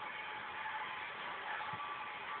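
Soft background music from a television broadcast, recorded off the set's speaker with a steady hiss; a faint held tone runs under it.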